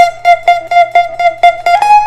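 Fender Stratocaster electric guitar through an amp: one note picked over and over, about four times a second, then bent up in pitch near the end and left ringing.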